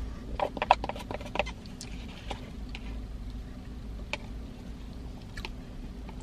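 Plastic spoon clicking and scraping in a plastic cup of dessert while eating. There is a quick run of small clicks in the first second and a half, then a few single clicks spread out, over a steady low hum.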